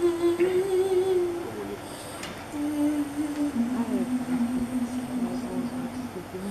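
Slow hummed melody: a few long held notes that step down in pitch, a higher one for the first second or so, a middle note about halfway through, then a long low note.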